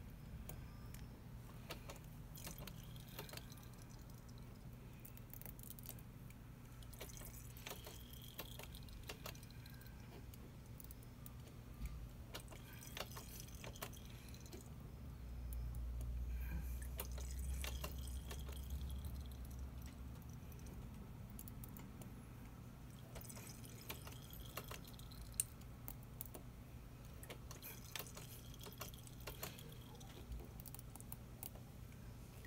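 Scattered small clicks and light metallic taps from handling the motorcycle's rear brake bleeder valve and its clear bleed hose, over a steady low hum. A low rumble swells for a few seconds around the middle.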